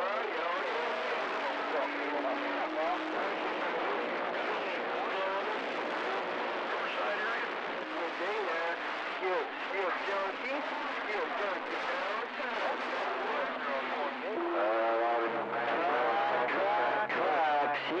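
CB radio receiver playing a crowded channel: several distant stations talking over one another, garbled and hard to make out, with steady carrier tones mixed in. The strong, shifting signals push the signal meter up to about S9.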